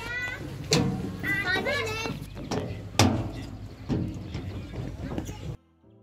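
Children's voices at a playground, with high wavering calls, and a couple of sharp knocks, the loudest about three seconds in. The sound drops out briefly near the end.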